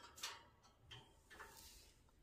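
Faint ticks and scrapes of a lovebird's beak and claws on metal wire cage bars as it climbs, in a few short clusters.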